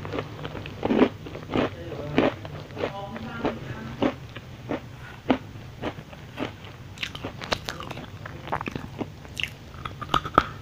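Crunchy cookies being bitten and chewed, a string of short, irregular crunches.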